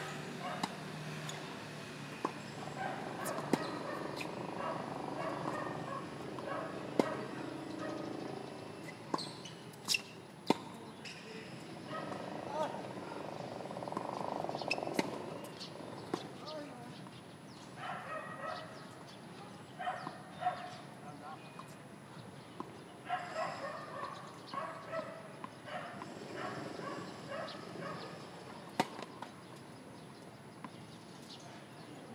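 Tennis balls struck by rackets: sharp single pops every few seconds, a few of them much louder, over a background of voices.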